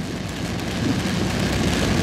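Rain on a car's windshield and roof, heard from inside the car: a steady hiss over a low rumble.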